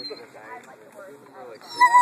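Mastiff crying and whining, fretting to be let back into the water: soft wavering whimpers, then near the end a loud high-pitched whine that holds steady and then drops away.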